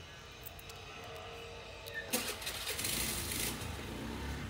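A road vehicle's engine swells in nearby about two seconds in, a burst of hiss followed by a low rumble that carries on.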